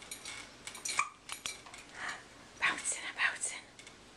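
Plastic toy link rings on a baby's doorway jumper clinking and rattling irregularly as the baby bounces, with a few short baby vocal sounds between about two and three and a half seconds in.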